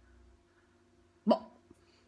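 Quiet room tone with a faint steady hum. About a second in, a woman says one short, clipped word.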